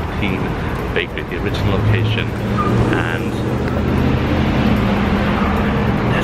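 Street traffic, with a vehicle engine running close by in a steady low hum from about a second and a half in.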